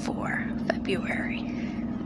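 A woman's soft, breathy speech, close to the microphone, over a steady low hum.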